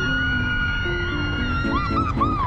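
A roller-coaster rider's long, high scream, held steady and breaking off near the end into shorter cries, over background music with a descending run of notes.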